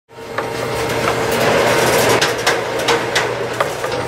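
Electromechanical crossbar telephone exchange equipment at work: relays and crossbar switches clicking irregularly over a steady hum and hiss.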